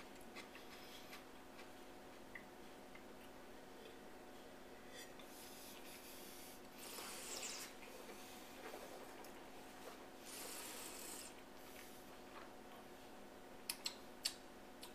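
Quiet room tone with a faint steady hum, broken by two brief soft rustling or rubbing sounds, one about halfway through and one about three seconds later.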